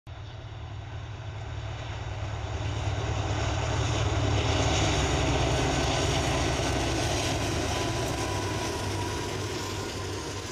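A freight train hauled by diesel locomotives goes by with a steady low rumble. It builds over the first few seconds and then slowly eases off.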